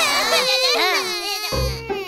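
A cartoon character's high voice crying and wailing in long, wavering sobs, with background music coming in near the end.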